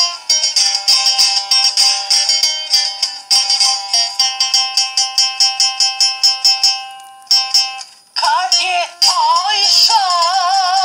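Sevdalinka music: an instrumental passage of held notes over a quick, even beat of struck or plucked notes, then a singing voice comes in about eight seconds in with a wide, wavering vibrato.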